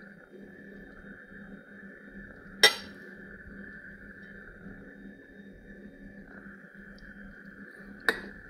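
A metal fork clinks once, sharply, against a plate about two and a half seconds in, with another clink at the very end, over a faint steady background hum.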